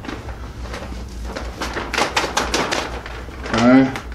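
A clear plastic vacuum-sealer bag crinkling and crackling in quick, irregular bursts as clothes are stuffed into it, with a brief vocal sound near the end.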